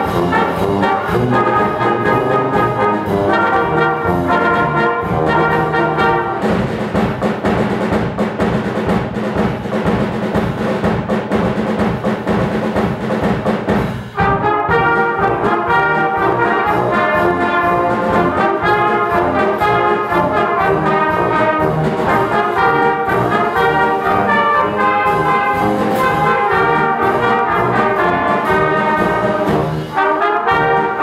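Youth fanfare band playing a march: trumpets, sousaphone and saxophones over drum kit and cymbals. There is a brief break about fourteen seconds in before the full band comes back in.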